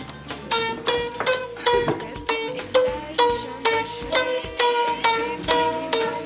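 A mandolin played one note at a time: a slow melody of single plucked notes, about two or three a second, each dying away before the next.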